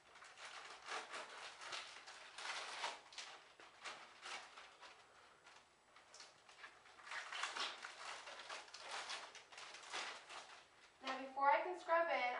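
Wrapper of a sterile surgical glove package rustling and crinkling as it is opened and unfolded by hand, in two spells with a quieter lull in the middle.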